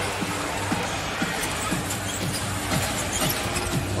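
Arena music with a bass line of short falling notes, about two a second, over the steady noise of the crowd in a basketball arena.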